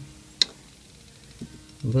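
A single sharp metallic click about half a second in: a pewter spoon tapping against the melting pot as it is pushed back into the molten pewter to melt down. After it, only a faint steady hum.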